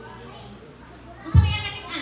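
Speech only: a woman's voice speaking in a hall, starting after a pause of over a second.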